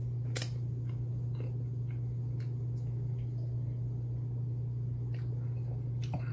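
Faint chewing and mouth clicks of someone eating a cupcake, with one sharper click about half a second in, over a steady low hum.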